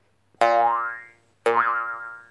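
Cartoon 'boing' sound effect, played twice about a second apart; each one rises in pitch and fades out.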